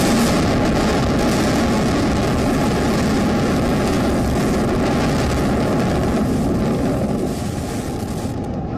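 Sustained rumbling roar of a high-rise tower collapsing in a controlled demolition, heard from a distance as a steady, even rush of noise that eases off near the end.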